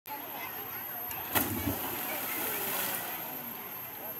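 A person jumping into a river: one sharp splash about a second and a half in as the body hits the water, then the spray falling back for a second or so.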